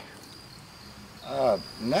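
A steady, faint, high-pitched trill of night insects in a pause between voices. A man's voice comes in near the end.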